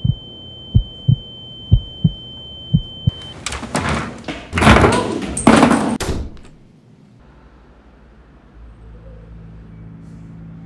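Heartbeat sound effect: pairs of low thuds about once a second under a steady high ringing tone that cuts off about three seconds in. Then loud banging and rattling at a door for about three seconds, followed by a low quiet hum.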